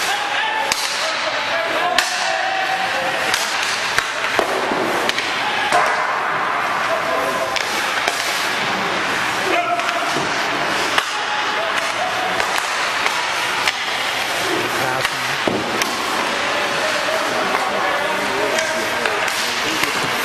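Ice hockey practice on a rink: sharp cracks of sticks hitting pucks on shots and passes, pucks striking the boards, and skates scraping on the ice. Cracks come every second or two.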